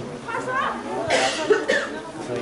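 A person coughing close by, a short rough burst about a second in and the loudest sound here, with people talking around it.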